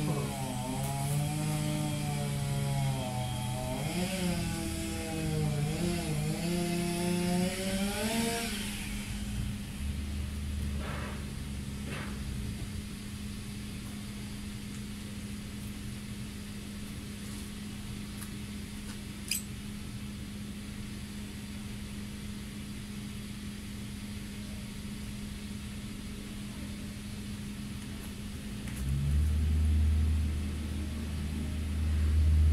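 Small two-stroke engine of a multi-tool pole chainsaw running, its pitch rising and falling for the first several seconds as the throttle is worked, then holding at a steady idle. The owner suspects the drive shaft has slipped out, so the engine runs but the chain does not turn.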